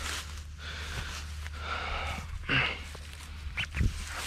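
A man breathing hard from exertion, with strained breaths and one louder grunt about two and a half seconds in.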